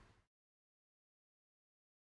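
Silence: faint room tone fades out a fraction of a second in, leaving complete digital silence.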